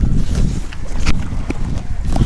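Wind buffeting the microphone in a loud, uneven low rumble, with a few short scratches and crackles of fingers picking at the packing tape of a cardboard parcel, the clearest about a second in.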